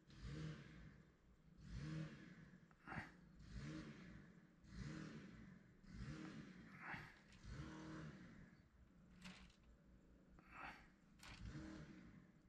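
Faint small engine revving up and down over and over, a swell every couple of seconds. A few light clicks sound over it.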